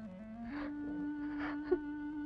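Film background music: a low sustained note steps up in pitch about half a second in and holds, with fainter higher notes above it.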